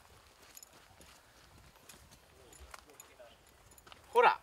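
Faint footsteps on a dry dirt trail: soft, irregular steps at a low level.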